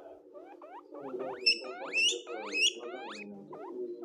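Guinea pig wheeking: a run of short rising squeals, about three a second, loudest in the middle.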